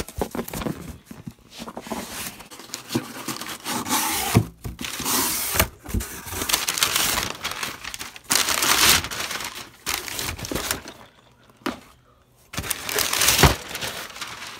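A cardboard shipping box being torn open and rummaged: irregular bursts of tearing, crinkling and rustling with sharp knocks of handling, and a short lull about three-quarters of the way through.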